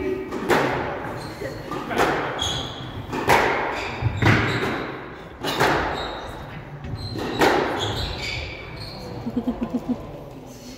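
Squash rally: about six sharp racket strikes and ball hits on the court walls, a second to a second and a half apart, with short squeaks from shoes on the hardwood floor between them.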